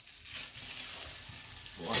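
Old emery paper being peeled off a glued metal grinding disc, a steady tearing noise lasting about a second and a half as the paper comes away from the glue.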